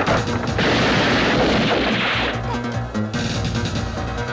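Action-film soundtrack music with a loud, noisy crash-like sound effect over the first two seconds or so, which then drops away and leaves the music.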